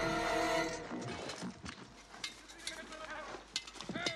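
A sustained chord from the film score cuts off within the first second. After it come quieter, scattered knocks and clinks of a galloping horse and rider.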